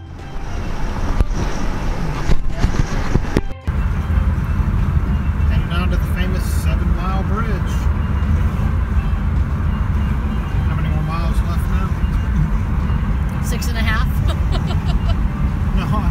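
A car driving at highway speed heard from inside the cabin: a steady low road and tyre rumble with wind noise over it, which becomes heavier after a break about three and a half seconds in.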